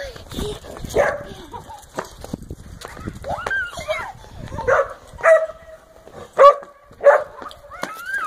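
A dog barking several times in short, sharp barks, mostly in the second half, among children's squeals and voices.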